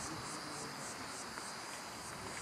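Insects singing: a high, pulsing song of about four pulses a second over a steady high whine.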